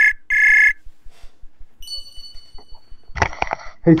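Web-browser video-call ringing tone: two short, loud pitched beeps in the first second. About two seconds in, a higher, thinner steady tone sounds for about a second as the call connects, then a voice comes in at the very end.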